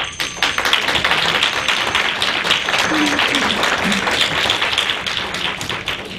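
Audience applauding. It starts suddenly and dies away near the end.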